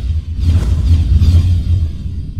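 Cinematic logo-intro sound design: a loud, deep rumble with two whooshing sweeps, about half a second in and again past the middle.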